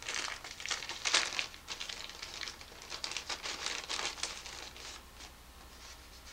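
Crinkly wrapper of a trading-card pack being torn open and handled: a dense run of crackles, loudest about a second in, thinning out and stopping about five seconds in.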